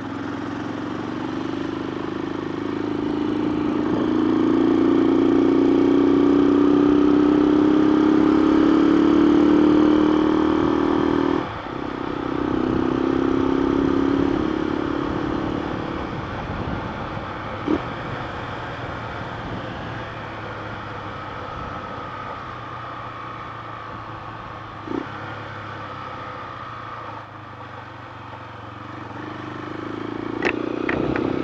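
Honda CBX 250 Twister's single-cylinder four-stroke engine accelerating under the rider, its note climbing and getting louder, a short break as it shifts gear about a third of the way in, then pulling again before easing off to a steadier, quieter cruise. The engine is still being broken in and is running the rich carburettor mixture the rider mentions.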